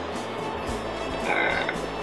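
Crackling and creaking of a plastic-packaged earring card being handled and turned over in the hands, over faint background music.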